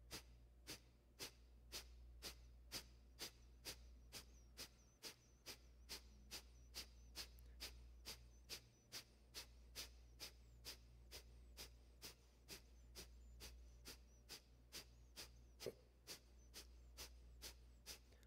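Kapalabhati breathing: a long, even series of short, forceful exhalations through the nose, about two a second, faint.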